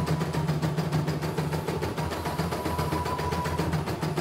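CNY E900 computerized embroidery machine stitching at a fairly fast speed: a rapid, even ticking from the needle mechanism over a steady motor hum.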